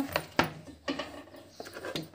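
A few sharp knocks and scrapes, the loudest about half a second in: a kitchen knife pushing diced cucumber off a wooden chopping board into a metal wok, the board and knife knocking against the wood and the pan.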